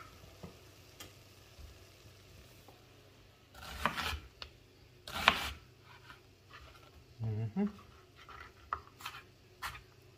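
A couple of louder scrapes and knocks from the vegetable pan, then, near the end, a knife slicing a red onion on a plastic cutting board in sharp strokes about two a second.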